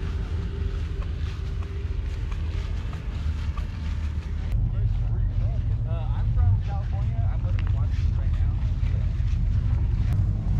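Wind buffeting the action camera's microphone, a low rumble that grows stronger about halfway through. Faint voices of people talking in the distance.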